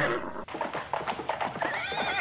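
Horses galloping: a quick run of hoofbeats, then a horse neighing near the end.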